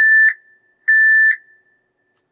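Alarm beeps from the display terminal running the Raven Rate Control Module: a steady, high single-pitched beep ends just after the start, and a second, about half a second long, comes about a second in. The alarm goes with a low tank or bin volume notice for the product 2 bin.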